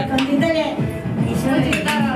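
Steel puja vessels, plates and small cups, clinking a few times as they are handled, over a crowd of voices.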